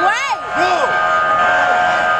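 A boxing ring bell sounds once, starting about half a second in and ringing on as a steady held tone for about a second and a half, marking the start of the round. A voice shouts just before it begins.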